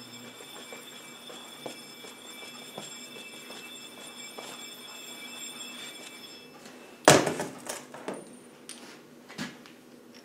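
Steel gear-puller parts handled against a gearbox shaft: faint scrapes and light clicks, then a loud metal clank about seven seconds in, followed by a few lighter knocks. A faint steady high hum runs underneath until shortly before the clank.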